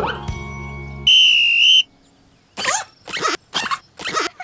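Background music fades, then a single sharp blast on a referee's whistle, under a second long, sounds about a second in as the starting signal for a race. After a brief hush comes a quick run of short scuffling bursts.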